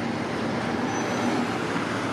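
Steady road traffic noise, an even hum of vehicles with nothing standing out.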